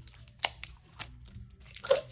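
Handling noise from a washi tape roll and its plastic wrapping being worked open by hand: a few light clicks and crinkles, with a louder tap near the end.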